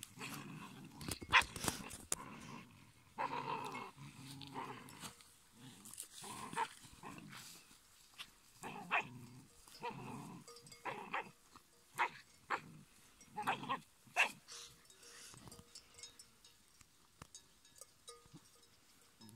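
Two puppies play-fighting, growling and letting out short sharp yelps in irregular bursts; the noise dies down after about fifteen seconds.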